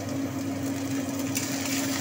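Shredded vegetable strips frying in oil in an iron kadai: a steady sizzle that turns brighter and louder about one and a half seconds in, over a constant low hum.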